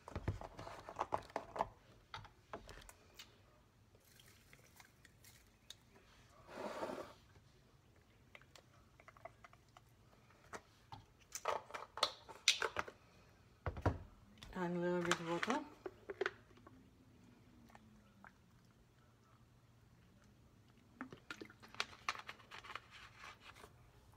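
Quiet kitchen handling: scattered clicks and knocks as a carton of almond milk is opened and poured into a plastic blender cup. There is a short hiss about seven seconds in, a low knock near fourteen seconds, and a brief murmur of voice just after it.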